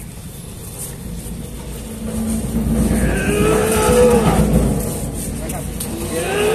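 Drawn-out vocal cries that rise and fall in pitch start about three seconds in, over a low rumble that swells to a peak and then eases off.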